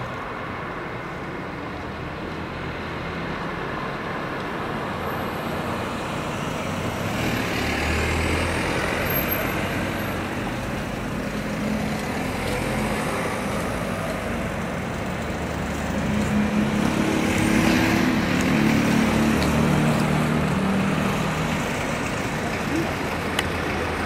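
Street traffic: vehicle engines running steadily, swelling as vehicles pass about eight seconds in and again near the end.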